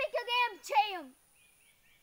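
A girl's voice speaking for about the first second, then stopping. After it, a faint bird call of short high chirps repeats about three to four times a second.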